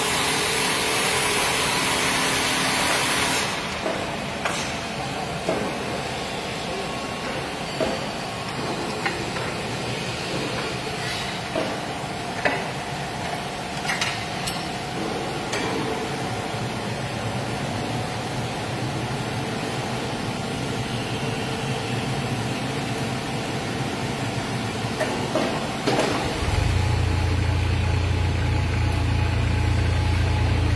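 Workshop machinery sounds: a loud hiss that cuts off about three seconds in, then scattered clicks and knocks over a steady hum. Near the end a low steady drone sets in as the mini track loader's engine runs.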